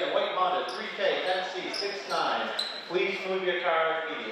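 Voices calling out across a basketball gym, with a basketball bouncing on the hardwood floor.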